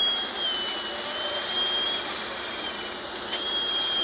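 Steady hissing roar of a burning minibus being hosed down by firefighters, with a high whistling tone that wavers slightly in pitch.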